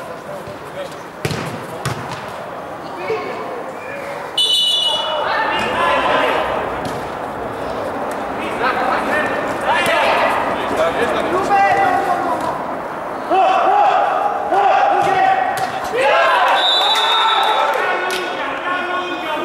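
Players shouting across an indoor five-a-side football pitch, with a few sharp thuds of the ball being kicked in the first seconds. The shouting gets louder about four seconds in and again near the end.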